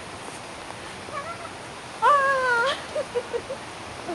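A person's voice, high-pitched and wordless: a short call about a second in, then a longer wavering squeal, followed by a quick run of short giggles.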